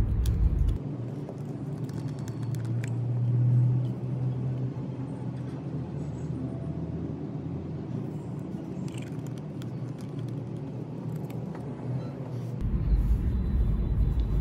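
Steady low background rumble, with a few faint light clicks of a plastic syringe and bottle being handled.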